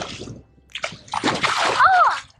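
A hooked kingfish thrashing at the surface beside the boat, splashing water hard: a short splash a little under a second in, then a longer, louder burst of splashing through the second half.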